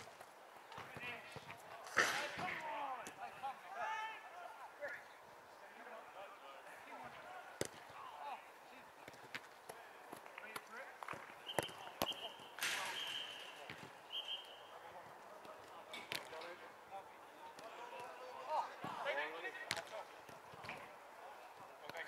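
Five-a-side football being played: a ball being kicked, with sharp thuds every few seconds and distant shouts from players. Around the middle come three short, high whistle blasts.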